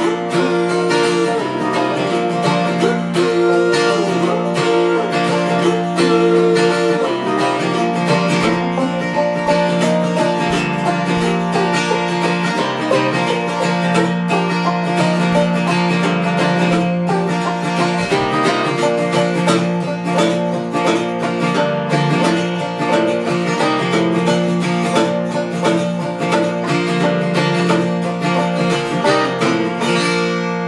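Handmade acoustic guitar and banjo playing together, a lively picked and strummed passage in a bluegrass-country style, with the sound starting to die away right at the end.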